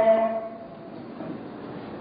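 A man's chanted Quran recitation through a microphone: a held note ends just under half a second in. It is followed by a pause that holds only a steady low hiss of hall and amplifier noise.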